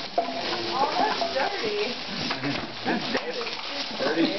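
A man's voice making wordless sounds and laughs, over a constant crackling hiss.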